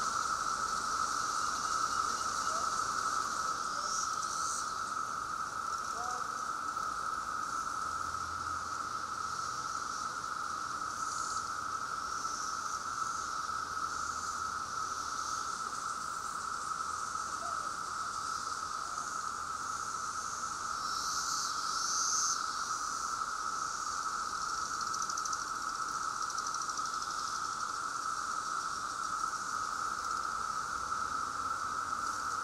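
A chorus of 17-year periodical cicadas (Brood X) droning steadily at one pitch, with a fainter, higher buzzing above it that swells a few times.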